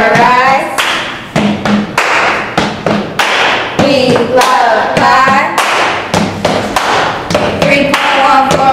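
A steady beat of thumps and claps, about two a second, with young voices chanting over it in snatches.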